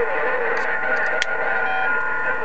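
Received audio from a President HR2510 radio tuned to 27.085 MHz: a steady, thin-sounding hiss of band noise with steady whistling tones, and a faint voice-like warble under it. There is a sharp click about a second in.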